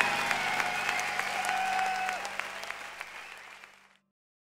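A large audience applauding, with a few held calls above the clapping, the whole fading out steadily to silence near the end.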